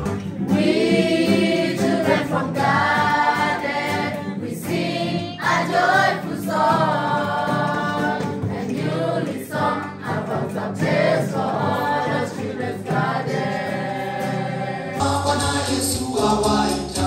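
A group of young people singing together as a choir. About a second before the end, music with a steady bass line comes in.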